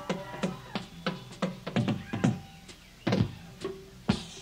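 Live rock band's drum kit heard on a room audience tape: loose, irregularly spaced snare and tom hits, with a quick run of deep tom strokes about two seconds in and another heavy hit near three seconds, over a faint held guitar note.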